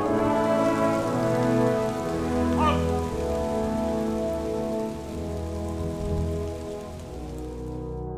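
Steady rain falling on pavement, with sustained brass band chords playing underneath; the rain cuts off just before the end.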